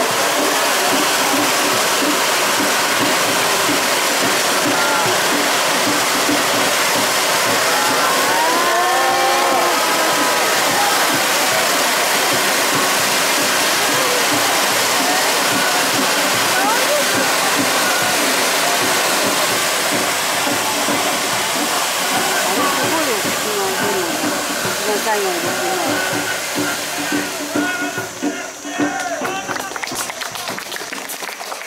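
Many hand-held tezutsu hanabi bamboo-tube fireworks spraying sparks at once, a loud, steady rushing hiss, with shouting voices over it. The hiss dies away near the end.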